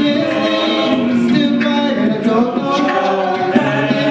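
Male a cappella group singing into microphones, several voices holding sustained chords in harmony that shift about every second or two.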